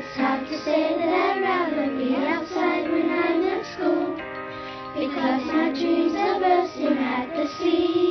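A children's song: a singing voice carries a wavering melody over steady, sustained backing chords, with no words made out.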